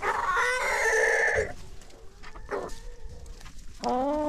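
Flock of chickens calling: one loud, drawn-out call lasting about a second and a half at the start, then softer short clucks, with another call beginning near the end.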